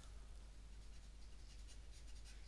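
Near silence: a faint, steady hiss with a low hum, with no distinct events.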